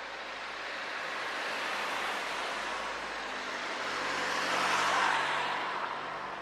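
Cars passing along a town street. Their tyre and engine noise swells twice, the louder pass about five seconds in.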